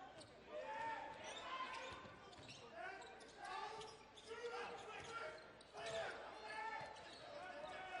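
Basketball game in a large arena: a ball dribbled on the hardwood court in short knocks, under a steady murmur of crowd and player voices.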